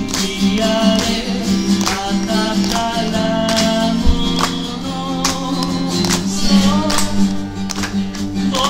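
Acoustic guitar strummed in a steady rhythm, with a voice singing a slow, held melody over it.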